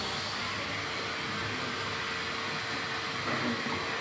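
Canister vacuum cleaner running steadily: a constant motor hum with a rushing air hiss.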